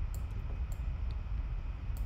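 Steady low hum of room noise with a few faint, sharp computer-mouse clicks spread through it.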